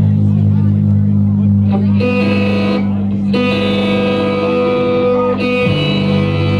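Amplified electric guitar and bass ringing out in a steady droning note through the amps, with a higher held tone coming in twice in the middle. Crowd chatter runs underneath.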